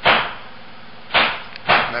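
Three hammer blows: stucco workers nailing chicken-wire lath onto the house framing on the floor above.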